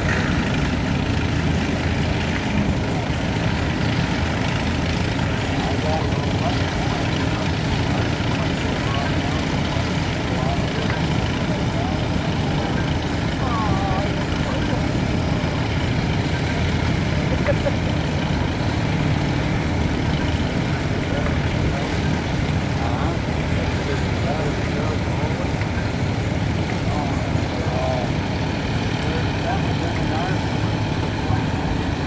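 Several antique farm tractor engines running steadily together, a dense low rumble with no change in level, with people's voices faintly mixed in.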